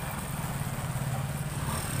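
A motor vehicle engine running nearby, a steady low drone.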